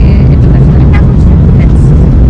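Loud, steady low rumble of a moving lake passenger boat heard from its open deck, with brief snatches of voices near the start and about a second in.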